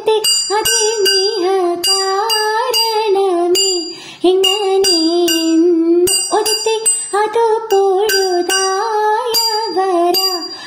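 Margamkali song: a female voice singing a swaying, ornamented melody, kept in time by bright metallic strikes of small hand cymbals about twice a second. The singing breaks off briefly about four seconds in.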